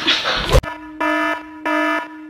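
An electronic alarm-like buzzer tone, steady in pitch and rich in overtones, starting abruptly just over half a second in after a short thump. It pulses in beeps about every two-thirds of a second.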